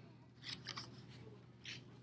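Faint rustling of a paper cut-out being picked up and turned over by hand, a few brief rustles.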